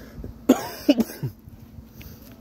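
A man coughing, a short cluster of two or three coughs starting about half a second in.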